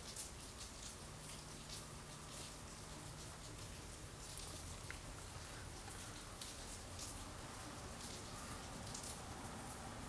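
Faint background noise: a steady hiss with light scattered crackles, and a low hum for a few seconds about a second in.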